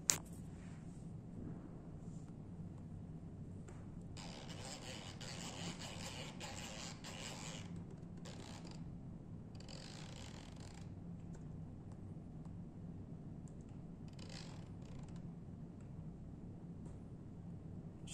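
Faint, intermittent scraping and rubbing of an ultrasonic angle-beam probe being slid over a steel calibration block to peak the echo: a long stretch of rubbing, then several shorter ones, over a steady low hum.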